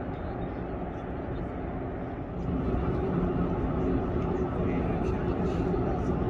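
Steady low rumble of outdoor background noise, with faint voices mixed in; it steps up in level about two and a half seconds in.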